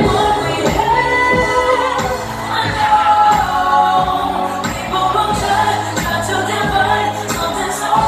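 A recorded pop song with sung vocals over a steady beat, played loud over a nightclub sound system.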